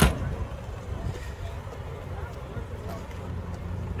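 Engines of Davis Divan three-wheelers idling in a steady low hum while one car is driven into line. A car door shuts with a single sharp bang right at the start.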